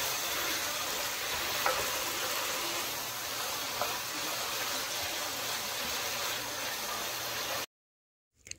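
Cabbage, carrot and pork chop pieces sizzling steadily in a frying pan as they are stir-fried, with a couple of faint spatula taps. The sizzle cuts off suddenly near the end.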